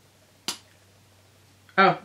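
A single sharp click about half a second in, from a lipstick and its packaging being handled as it is unboxed.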